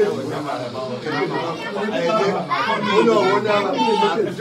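Several voices talking over one another, children's voices among them.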